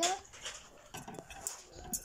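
A young child's drawn-out vocal sound trailing off at the start, then a few light clicks and knocks of plastic toys being handled.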